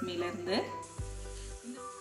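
A woman's voice stops about half a second in, followed by a steady hiss with faint held tones under it.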